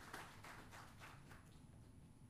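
Faint, scattered hand claps from an audience, a few irregular claps dying away over the first second and a half, then near silence.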